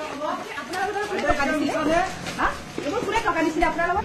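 Several people's voices talking and calling out over one another, loud and overlapping, with no single clear speaker.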